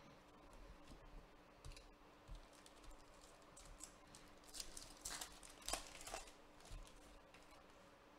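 Faint crinkling and rustling of a foil trading-card pack wrapper being handled and torn open, with a few soft taps and clicks. The crinkles are loudest a little past the middle, over a faint steady hum.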